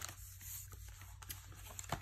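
Faint rustle of paper and card as fingers press and smooth a freshly glued die-cut paper embellishment onto a notebook page, with a few light taps, the clearest just before the end.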